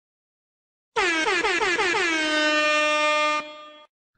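DJ-style air horn sound effect: a rapid run of short blasts, about four a second, runs straight into one long held blast. It starts about a second in and fades out shortly before the end.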